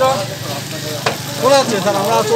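Men's voices calling out over steady street noise, with a single sharp knock about a second in.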